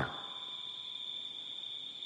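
Crickets calling: a steady, high-pitched trill that holds at one pitch without pause.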